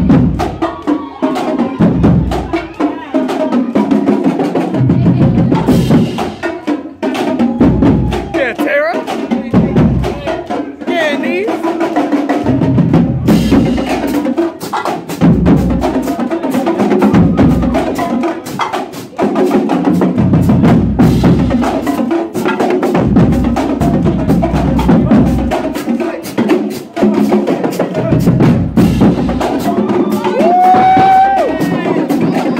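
A marching band drumline playing a fast cadence: bass drums thumping under rapid snare and tenor drum strokes, with voices shouting over it.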